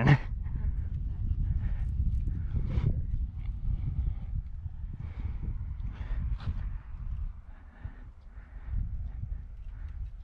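Low, uneven rumble of buffeting on the camera's microphone, with a few faint clicks scattered through it; the rumble eases off somewhat in the last few seconds.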